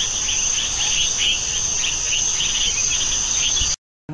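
Insects, crickets by the sound, chirping loudly: a steady high-pitched trill with a lower chirp pulsing about three times a second. It cuts off suddenly shortly before the end.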